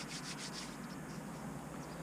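A few quick rubbing or rustling strokes in the first half-second or so, then faint steady background noise.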